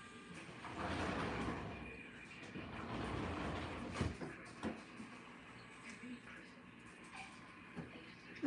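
Close-up chewing of a bite of buffalo garlic knot topped with Ritz crackers and blue cheese, in two long crunchy stretches, with a sharp click about four seconds in.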